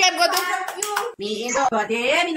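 Several people clapping, a quick run of claps in the first second, with excited voices over and after them.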